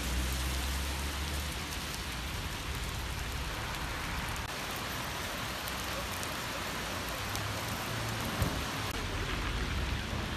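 Steady rain falling on the road and pavement, an even hiss throughout.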